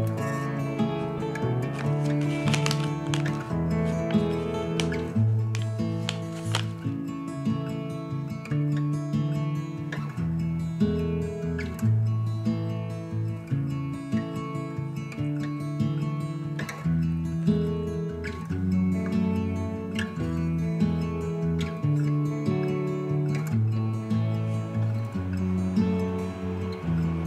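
Instrumental background music, with sustained chord notes changing about once a second.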